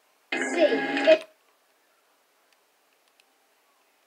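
A short line of film dialogue played through a television's speaker, lasting about a second near the start, then near silence.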